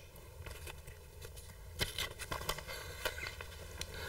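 Faint, scattered clicks and rustles of Cluedo cards being handled at a table, with a few sharper ticks in the middle.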